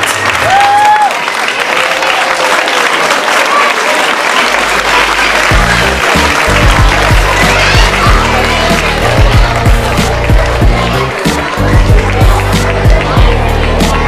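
Audience applauding, then music with a steady bass beat comes in about five seconds in and carries on.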